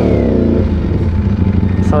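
Ducati Panigale V4's 1103 cc V4 engine through an Arrow exhaust, its revs falling away over the first half second, then running low and steady at a crawl.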